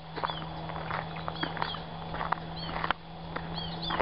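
Irregular knocks and clicks, with repeated short downward-sliding chirps of small birds and a steady low hum underneath.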